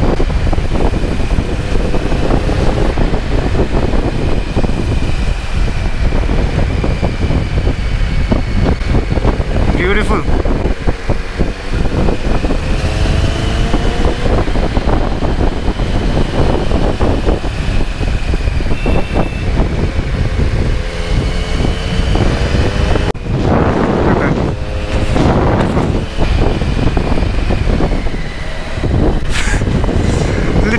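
Kawasaki Z900 inline-four engine revving up and down through a run of corners, under heavy wind noise on the microphone. The sound changes abruptly about three-quarters of the way through.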